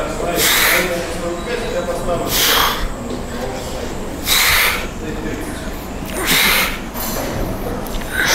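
A man's short, forceful exhalations through the mouth, four of them about two seconds apart: one breath pushed out with each rep of a behind-the-neck lat pulldown.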